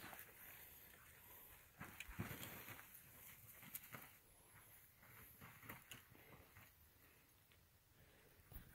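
Near silence with a few faint crunches and scuffs of feet on loose, dry dirt and rock, dying away near the end.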